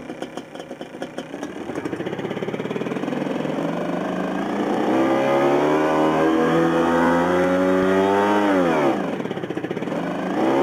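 Revolt RV 400 electric motorcycle's synthetic 'Rage' engine sound: an uneven burbling at first that builds into a steady, slowly rising rev, then drops sharply near the end before starting to climb again.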